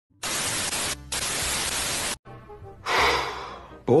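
TV static: a loud, even hiss that drops out for a moment about a second in and cuts off suddenly after about two seconds. A softer swell of noise follows near the end.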